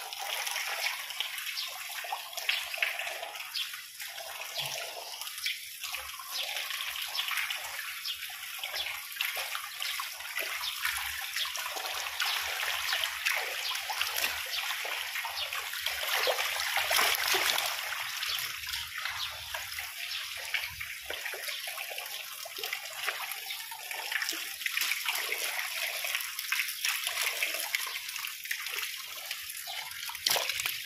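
Steady splashing and trickling of water in a concrete fish pond, where a dense crowd of tilapia, gourami and climbing perch churn the surface.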